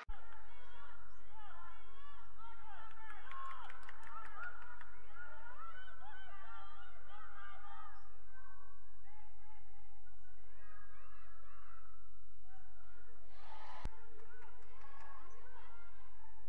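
Gym sound from a basketball game in play: crowd voices and court noise, with a single sharp knock near the end.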